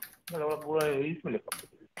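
Typing on a computer keyboard: a few scattered key clicks.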